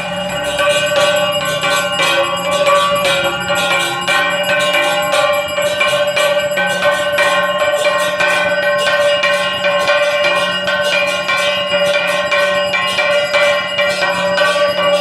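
Temple bells rung rapidly and without pause during aarti worship: a dense run of metallic strokes, many a second, over a steady ringing.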